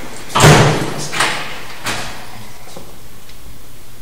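A loud door bang about half a second in, followed by two lighter sharp thuds spaced about two-thirds of a second apart.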